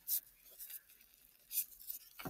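Faint, brief rubbing and rustling of gloved hands working the skin off a raw chicken wing, a few short scratchy noises rather than a steady sound.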